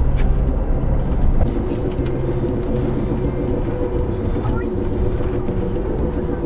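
Steady engine and road noise heard from inside the cab of a small camper van while it is driven along a road.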